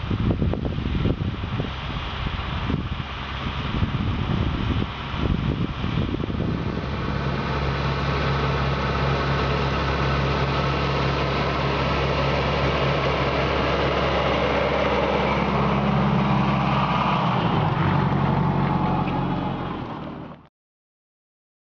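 Fendt Farmer 309 LSA tractor's diesel engine working under load while pulling a plough through the soil. Uneven for the first few seconds, then a steady, louder drone as the tractor comes close.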